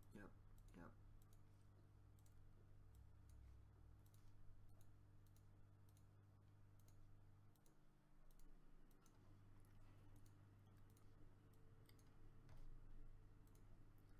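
Faint computer mouse clicks, irregular and roughly one a second, over a low steady hum.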